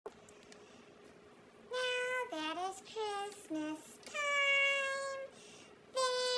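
A high-pitched, chipmunk-style singing voice, starting about two seconds in: a few short sung notes, some dropping at the end, then one long held note.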